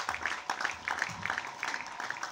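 Audience applauding with light, scattered hand claps, the individual claps distinct.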